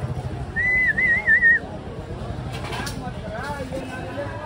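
A person's warbling whistle, about a second long and wavering in pitch, shortly after the start, over a low hum of street noise with faint voices later on.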